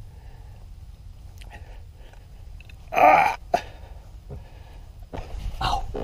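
A person's short, loud cough-like vocal burst about three seconds in, followed by a click. Faint handling clicks and a second, softer burst with a low thump come near the end.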